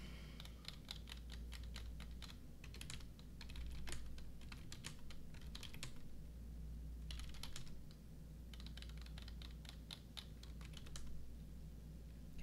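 Computer keyboard typing in short runs of keystrokes with pauses between, as ticker symbols are keyed in to call up stock charts. A low steady hum runs underneath.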